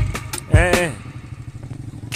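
A beat-driven music track ends in the first half-second, followed by a brief voice sounding a single note that rises and then falls. After that a motorcycle engine runs with a low, steady rumble.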